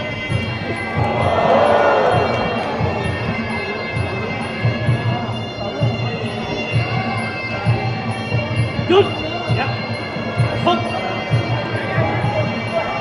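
Music with a steady low drum beat and a fast, regular high tick over sustained tones, with crowd noise swelling about a second in. A few sharp knocks come near the end.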